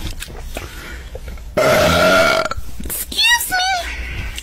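A loud, drawn-out burp lasting about a second, starting a little over a second and a half in, followed near the end by two short squeaky chirps that bend up and down in pitch.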